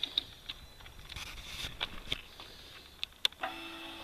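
A few sharp clicks, then, about three and a half seconds in, a steady electric whine starts: the 2015 Indian Scout's fuel pump priming with the ignition on, before the engine is started.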